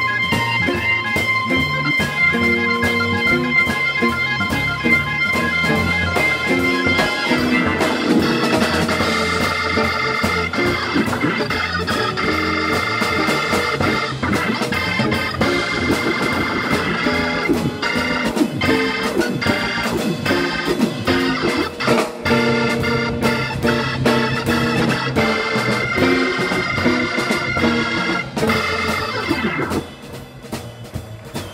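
Hammond organ soloing in a soul-jazz groove over a steady drum beat: long held high notes for the first several seconds, then fast runs and chords.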